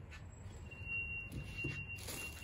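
Faint rustling of fabric doll clothes and a plastic bag being rummaged through by hand, over a steady low rumble. A thin, steady high tone starts about a third of the way in and holds.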